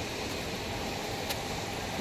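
Steady background noise of a quiet street, with a single brief click a little past halfway.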